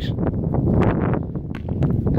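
Wind buffeting the microphone, with a few short knocks from a hurley striking a sliotar and the ball hitting a concrete-block wall.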